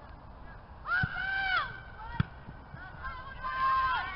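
Footballers shouting on the pitch: a long, held shout about a second in and another near the end, with a single sharp thud a little after two seconds, the loudest moment, from the ball being kicked.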